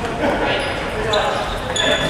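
Futsal balls being kicked and bouncing on a wooden sports-hall floor, echoing in the large hall, with a high squeak from about a second in.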